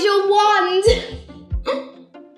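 A child's voice drawing out the word "your" for most of a second, then two short low thuds, one about a second in and one near the end, over background music.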